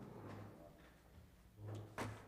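Quiet room tone with a steady low hum, a soft knock or handling sound near the end, and a sharp click as it ends.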